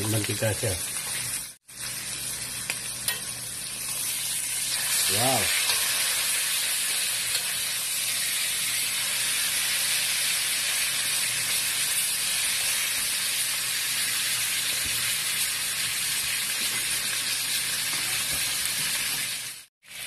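Pork chops frying in hot oil in a cast-iron skillet: a steady sizzle that grows louder about five seconds in. It breaks off for an instant near two seconds in.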